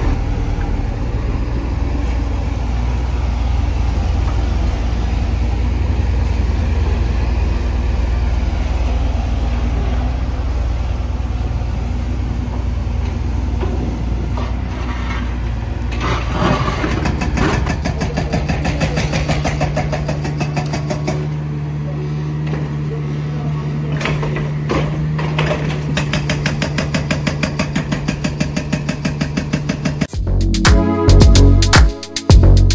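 Kubota U55-4 mini excavator's diesel engine running steadily under the digging work. About halfway through the sound changes: a new steady tone comes in with a fast, even clatter.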